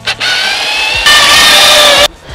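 Cordless drill driving a screw through a speaker wall-mount bracket into the wall. The motor whine climbs in pitch, then about a second in gets louder and runs steady at full speed before cutting off suddenly.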